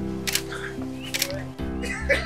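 Background film music of held keyboard chords that change every half second or so, with a few short sharp sounds over them.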